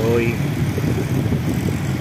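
Street traffic: car and motorcycle engines running, a steady low rumble.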